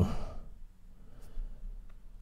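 A man's drawn-out sigh that falls in pitch and trails off into a breathy exhale. It is followed by quiet room tone with a faint click near the end.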